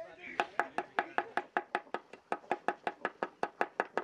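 A fast, even series of sharp wooden-sounding knocks, about five a second, starting about half a second in and keeping a steady rhythm.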